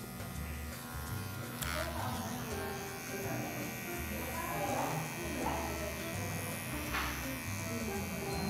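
Electric hair clipper with its guard removed, buzzing steadily as it trims close along the hairline behind the ear and the nape.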